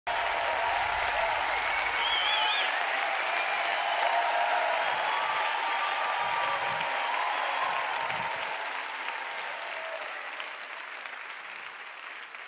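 Studio audience applauding, with a brief high cheer from the crowd about two seconds in; the applause dies away over the last few seconds.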